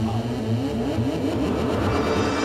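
Engine-like revving within a marching band's machine-themed show music: a steady low drone with a run of short rising glides stacked over it.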